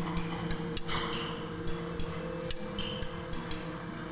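Motion-triggered kinetic sound sculpture built around finned metal discs, giving a string of irregular light metallic ticks and pings that each ring briefly, like raindrops. A steady low hum runs underneath.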